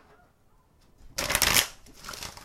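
A deck of oracle cards being shuffled in the hands: one quick, loud riffle about a second in, lasting about half a second.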